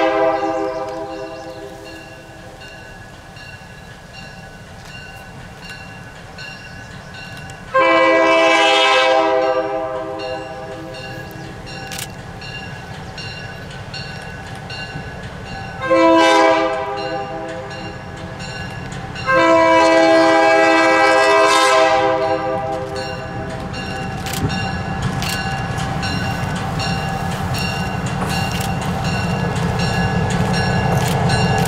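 Diesel locomotive horn blowing the long-long-short-long grade-crossing signal: a long blast ending about a second in, another long blast about 8 s in, a short one around 16 s and a final long blast from about 19 to 22 s. After that the locomotive's engine and the train on the rails grow steadily louder as it approaches.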